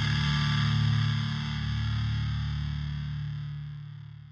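Outro music: a held, distorted electric-guitar chord ringing out and fading away.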